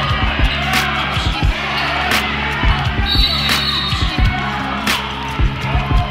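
Music with a steady beat, a sharp strike about every second and a half, over the thuds of a basketball bouncing on a hardwood gym floor.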